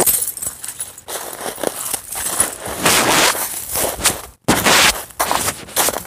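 Handling noise close to a phone's microphone: irregular loud rustling and rubbing as the phone is moved about, with a sudden, brief cut to silence about four and a half seconds in.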